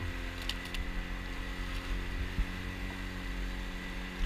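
Boat's outboard motor running steadily at cruising speed, with water rushing along the hull. A few light clicks sound about half a second in.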